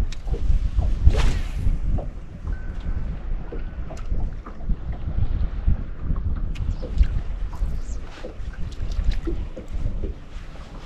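Wind buffeting the microphone in gusts on an open boat, with scattered small knocks and water slaps. There is one louder rushing gust about a second in.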